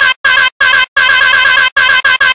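A short, high-pitched warbling sound looped rapidly in a stutter edit, about ten repeats a second, chopped into blocks by sudden silent gaps.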